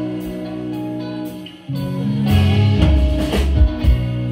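A live rock band playing without vocals: electric guitars, bass guitar and drum kit. The sound thins out and drops briefly a little before halfway, then the full band comes back in loud.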